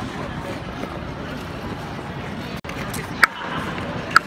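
Public ice-rink ambience: skate blades scraping on the ice under a steady hubbub of skaters' voices, with a short sharp click about three seconds in.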